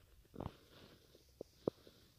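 A short breath close to the microphone about half a second in, then two faint small clicks.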